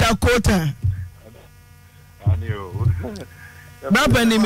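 A person's voice speaking in short bursts, with a pause of about a second and a half between, over a steady electrical hum.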